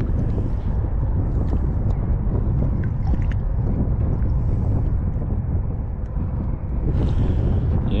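Wind buffeting the microphone, a steady low rumble, with a few faint clicks about three seconds in.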